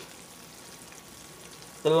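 Low, steady sizzling hiss of candy-apple sugar syrup boiling in a pot on an electric hot plate.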